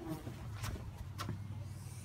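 A carpenter bee dive-bombing close to the microphone: a steady low buzzing hum from its wings.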